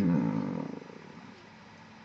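A man's drawn-out wordless voiced sound, a hesitant 'euuh' or groan, lasting under a second and fading out, followed by faint room hiss.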